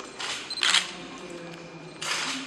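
Camera shutters firing: two quick shutter sounds within the first second, followed by low room noise.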